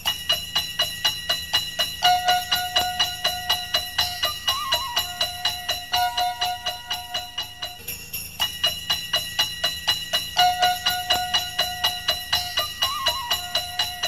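Instrumental Christmas music without singing, led by sleigh bells jingling on a steady beat of about four shakes a second, with a short melodic phrase that repeats.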